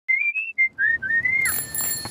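A short whistled jingle: a few quick notes that step and glide upward, followed about three-quarters of a second in by a bright, high ringing tone that holds to the end.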